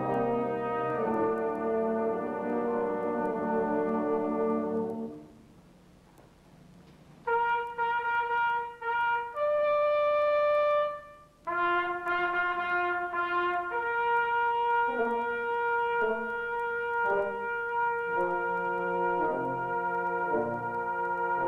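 Military band's brass section, trombones and tubas among them, playing long sustained chords. The chord fades out about five seconds in, and after a short pause the band comes back with long held notes, broken off twice, then holds steady chords.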